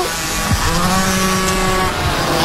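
Air-cooled 40cc two-stroke minibike engines racing past at high revs, one holding a steady, even note for over a second through the middle.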